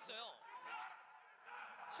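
Faint male commentator speech over a football broadcast, with quiet stadium background noise in the pauses.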